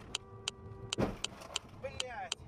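A car's turn-signal relay ticking about twice a second in the cabin, heard over a dashcam. In the first half a steady tone sounds, then about a second in a sudden loud rush of noise, and a man's short exclamation comes near the end.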